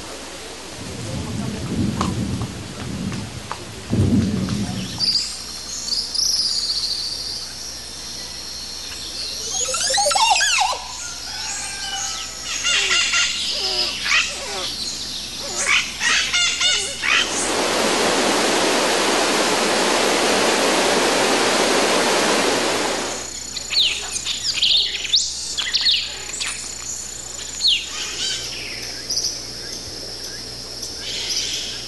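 Birds calling in the trees: whistled notes, chirps and sweeping calls, several at a time. There are low rumbles in the first few seconds, and a steady rushing noise lasts about six seconds in the middle.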